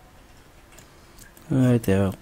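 A few faint computer mouse clicks over low room noise, then a man's voice speaking briefly near the end.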